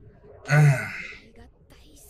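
Luffy's voice from the One Piece anime: a man's breathy, strained voice saying one short word about half a second in, the start of a subtitled line.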